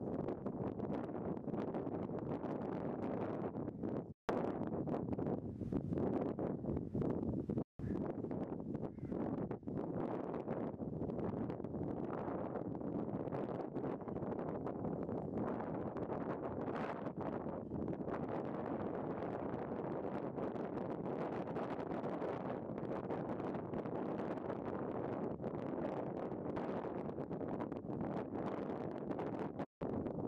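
Wind buffeting the microphone: a steady low rushing, broken by three very brief silent gaps, at about 4 s, about 8 s and just before the end.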